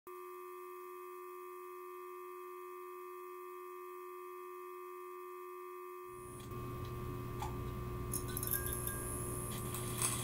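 A steady ringing drone of a few held pure tones, one low and several higher, sounding together. About six seconds in, a low room rumble joins, with a few small clicks and then a high hiss toward the end.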